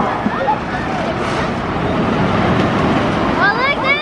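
Viper wooden roller coaster train running over its wooden track with a steady rumble; near the end, several riders scream together.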